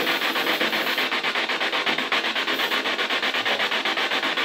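Loud, steady rasping static, pulsing evenly at about ten pulses a second.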